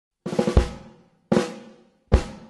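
Start of a music track on drums: a quick fill of four hits, the last one the heaviest, then a single hit a second later, each ringing out and fading away.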